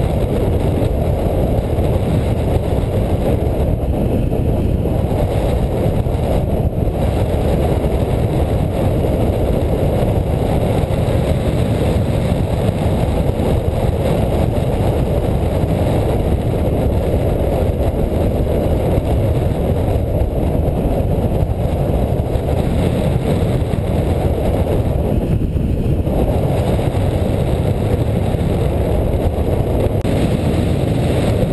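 Steady rushing wind from the airflow over a hang glider in flight, buffeting the wing-mounted camera's microphone.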